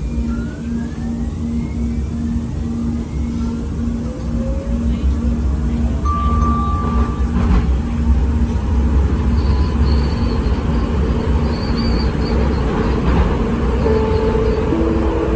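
Siemens S200 light rail train pulling out of an underground station and speeding up into the tunnel, heard from inside the car. The traction motors whine in rising glides early on, and a low rumble from the wheels on the rails builds and grows louder from about four seconds in.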